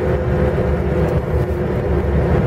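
Cabin noise of a VAZ-2120 Nadezhda driving at speed on Forward Professional K-139 mud tyres: a steady low rumble with a steady drone in it. By the occupants' account it is without the metro-like hum from the tyres.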